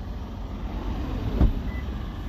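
A car door shutting with a single thump about one and a half seconds in, over a steady low rumble.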